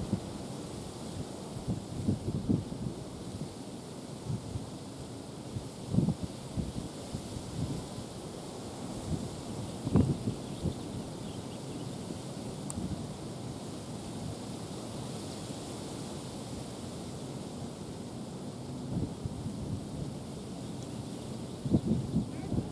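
Wind blowing across an outdoor camera microphone, a steady rumbling hiss with several short, stronger gusts.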